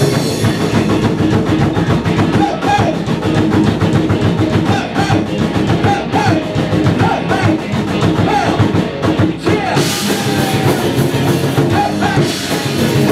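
A live rock band plays: a hard-hit drum kit, distorted electric guitar, and a vocalist rapping into the microphone. Near the end the cymbals get louder.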